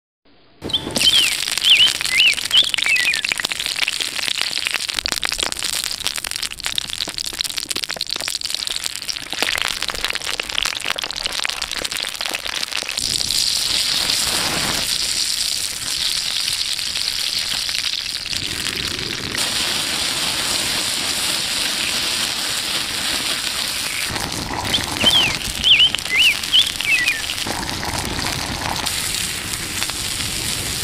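Wood fire crackling steadily under roasting green peppers, with a bird chirping briefly near the start and again near the end.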